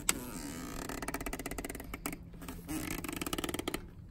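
Ratchet wrench clicking rapidly as it turns a cap-type oil filter wrench on a Ford 3000 tractor's spin-on oil filter, in two runs of quick clicks, after one sharp click at the start.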